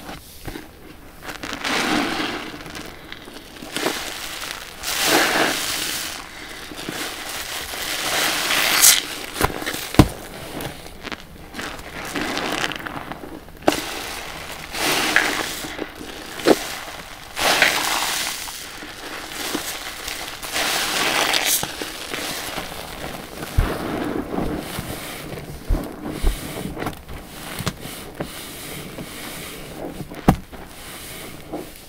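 Wet sponges squeezed by hand in a basin of soapy laundry-detergent water: a squelching rush of foam and water with each squeeze, repeating every two to three seconds, with a few sharp pops among them.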